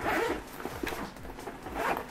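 Zipper on a soft insulated fabric lunch bag being pulled open around its lid in several short zipping strokes, the strongest near the start and just before the end.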